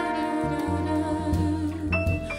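Live jazz combo playing: a woman's voice holds a long note over the band, with upright bass notes underneath.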